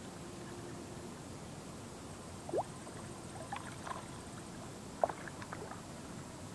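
A hooked fish being pulled in by hand on the fishing line, heard as small splashes and clicks over a steady outdoor hiss. A short rising squeak comes about two and a half seconds in, and the sharpest click about five seconds in.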